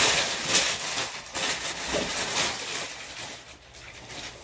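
Wrapping paper rustling and crinkling as it is pulled off a new pair of boots, loudest for the first couple of seconds and then dying away.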